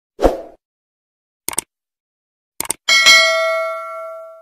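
Sound effects of a subscribe-button animation: a short thump, two quick double clicks about a second apart, then a click and a bell ding that rings on and slowly fades.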